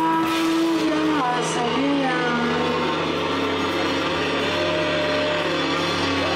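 A live folk-pop band plays, with long held notes from the guitars and keyboard and a voice over the top.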